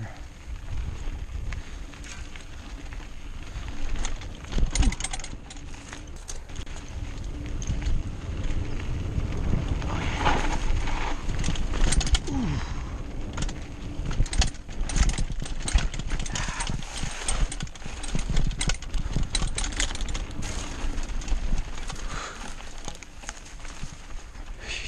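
Diamondback Hook mountain bike riding fast down a dry dirt singletrack: tyres crunching over loose dirt and the bike rattling and clattering over bumps, under a steady rush of wind on the microphone.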